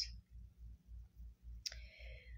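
A pause in a woman's reading: near the end a sharp mouth click and a short breath in as she gets ready to speak again, over a faint low throb repeating about five times a second.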